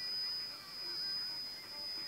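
Shortwave reception on an Eddystone Model 1001 receiver: a steady high-pitched whistle over faint band hiss. The whistle is typical of a heterodyne beat from a neighbouring station's carrier.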